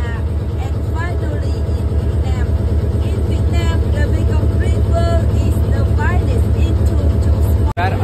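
Engine of a wooden river tour boat running steadily under way, a loud low rumble with an even fast pulse, with a woman talking over it.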